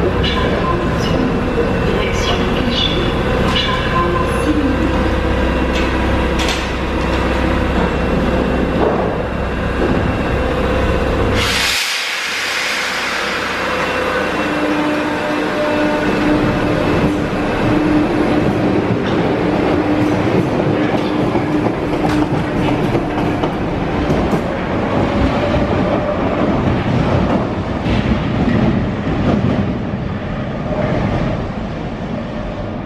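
Paris Metro MF77 train standing at the platform with a steady low hum, then a sudden sharp hiss of air about twelve seconds in as the hum cuts out. It pulls out, its motors and wheels running on as it leaves the station.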